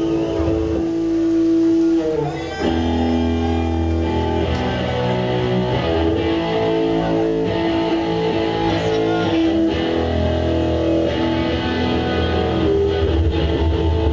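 Live punk band playing an instrumental passage without vocals, led by a Telecaster-style electric guitar over bass guitar. There is a brief drop in level about two and a half seconds in before the band carries on.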